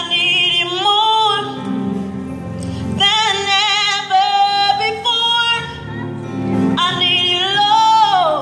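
A woman singing a gospel solo into a microphone over keyboard accompaniment, in sung phrases with long held notes and vibrato.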